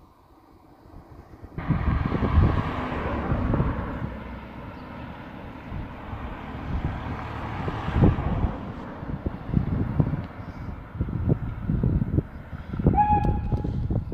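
Outdoor wind gusting across the microphone in irregular low buffets over a steady rushing background, setting in suddenly about a second and a half in. A short pitched tone sounds briefly near the end.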